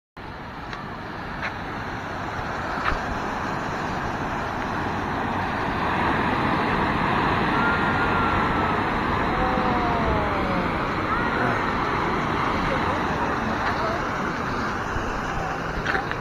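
Surf washing over a rocky, boulder-strewn shore, with wind on the microphone: a steady rushing noise. A few faint clicks come early, and a few short tones sliding down in pitch sound about halfway through.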